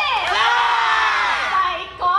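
A group of yosakoi dancers shouting together in one long call, many voices at once, dipping in pitch at the start and then held until it breaks off just before the end.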